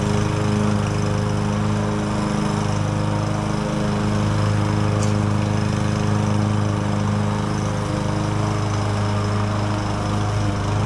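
Craftsman gasoline push mower engine running steadily while cutting grass.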